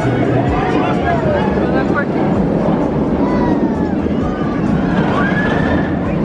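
Inverted roller coaster train running along its steel track, a steady low rumble, with riders' drawn-out screams and crowd chatter over it.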